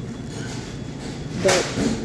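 Steady low room noise with no distinct events, then a single short spoken word with a sharp click about a second and a half in.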